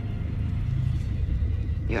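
Steady low rumbling drone of a science-fiction spaceship's background ambience. A woman's voice starts speaking at the very end.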